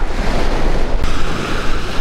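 Small sea waves washing onto a sandy beach, with wind buffeting the microphone.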